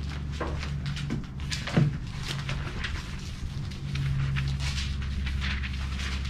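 Pages of a large Bible being leafed through by hand: a string of light papery rustles and flicks, with one sharper knock about two seconds in. A steady low hum runs underneath.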